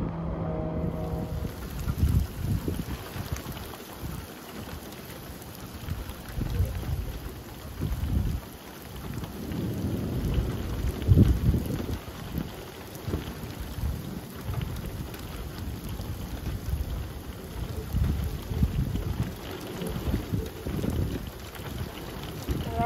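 Thunderstorm arriving: gusty wind rumbles irregularly against the microphone over a steady hiss of rain. The loudest surge comes about eleven seconds in.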